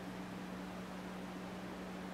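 Room tone: a steady hiss with a constant low hum underneath, unchanging throughout.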